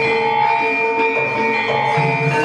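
Javanese gamelan playing: metallophones and gongs ringing in long, overlapping tones, with a new note struck about every half second.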